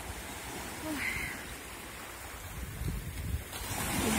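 Small waves washing and breaking on a sandy beach, with wind rumbling on the microphone.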